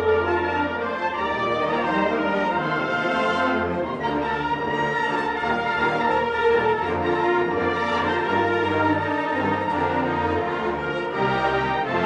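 Concert band music with brass prominent: held chords over long, sustained low notes.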